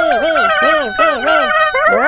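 Several high-pitched cartoon voices babbling gibberish syllables together, overlapping, in quick up-and-down pitch swoops.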